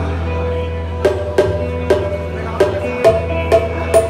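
Live folk music through a PA: a hand drum plays sharp, ringing strokes in an uneven pattern starting about a second in, over a steady low hum.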